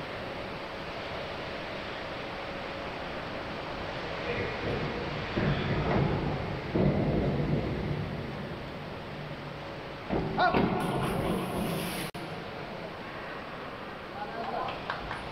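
Echoing indoor diving-pool hall with divers hitting the water: loud splashes about five to seven seconds in and again at ten to twelve seconds, over a steady wash of hall noise.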